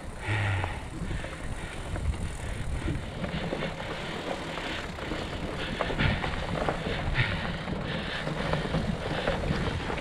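Mountain bike ridden along a dirt singletrack, its tyres rolling and crunching over dry fallen leaves, with frequent small rattles and knocks from the bike over the bumps.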